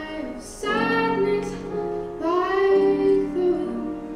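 Female jazz vocalist singing two slow, drawn-out phrases of a ballad into a microphone, with solo piano accompaniment.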